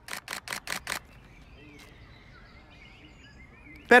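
Nikon D7200 DSLR shutter firing a continuous burst, about six clicks in under a second, capturing a jump. Faint bird chirps follow.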